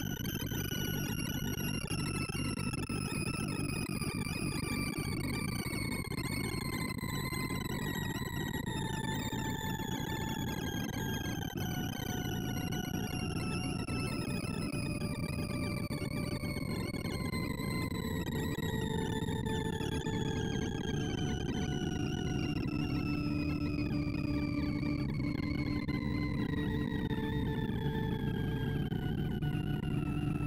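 Sorting-visualizer audio for a Stable Quick Sort: a dense stream of rapid synthesized beeps whose pitch follows the value of each array element being accessed. They form a slow, steady falling sweep, with a gritty buzz beneath. From about halfway in, a few steady low held tones join.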